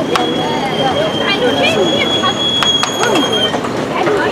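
Background voices and street hubbub. A few sharp clicks of metal spatulas on the steel cold plate of a rolled ice cream machine come about two and a half to three seconds in. A steady high tone holds for about three and a half seconds.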